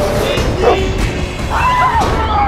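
Horror-trailer soundtrack: music over a steady low rumble, with short animal-like pitched cries sliding up and down near the start and again near the end.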